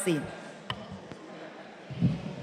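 Low room tone in a large hall, with one sharp click about two-thirds of a second in and a fainter tick shortly after.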